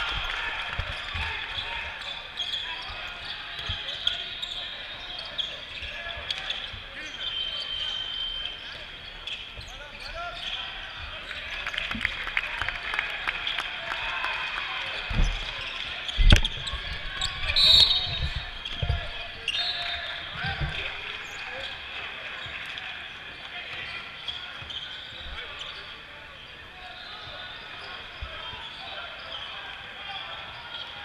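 Basketball game play: a ball bouncing on a plastic tile sport court, sneakers squeaking and players' footsteps. The heaviest thumps come around the middle, during a drive to the basket and a layup, under a murmur of voices.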